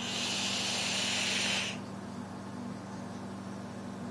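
Hiss of air drawn through a Dark Horse clone dripping atomizer with its coil firing and sizzling, at about 100 watts, lasting nearly two seconds, followed by a fainter breathy exhale.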